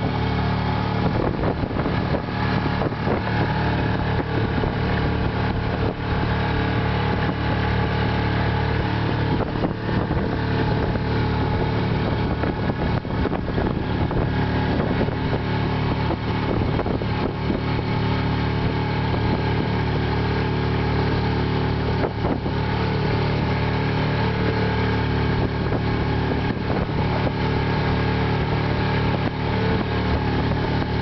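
A sailing keelboat's auxiliary engine running steadily under way, motoring against the incoming tide.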